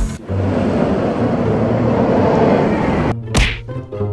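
Edited transition sound effect: a long whoosh over a low rumble, cut off by a sharp whip-crack hit about three seconds in. Plucked-string music starts right after the hit.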